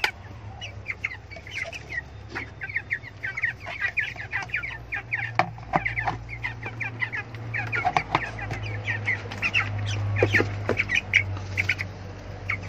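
Young white broiler chicks peeping without pause, many short high calls overlapping. A few sharp clicks and knocks come from a plastic bell drinker being handled and set down among them.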